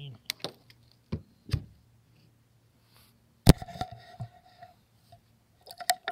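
Several light clicks and knocks, then one sharp knock about three and a half seconds in, followed by a brief ringing tone that dies away within about a second; a few more clicks come near the end.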